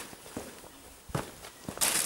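Footsteps in work boots on a concrete floor, about three steps, with a louder scraping rustle near the end.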